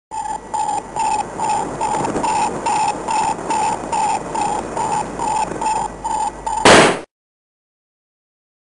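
Electronic sci-fi sound effect: a beeping tone pulsing about three times a second over a steady hiss. It ends in a short, loud noise burst and then cuts off suddenly.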